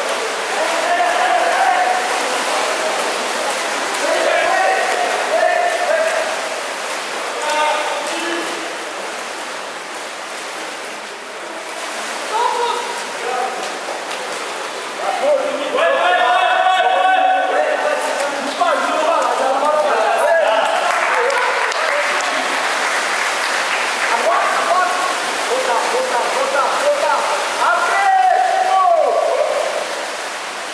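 Water polo play: steady splashing from swimmers in the pool, with players' shouts and calls on top, loudest about halfway through and again near the end.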